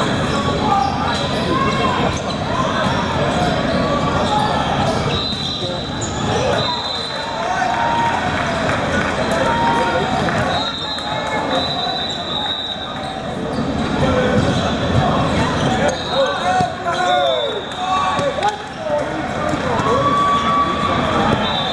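Busy gym sound during a volleyball game: many short sneaker squeaks on the sport-court floor, scattered knocks of the ball being hit and bouncing, and players' and spectators' voices, all echoing in a large hall.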